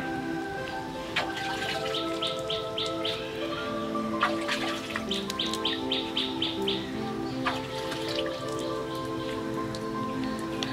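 Background music of long held notes, with a bird calling in two quick runs of short, high chirps, one a couple of seconds in and a longer one around the middle.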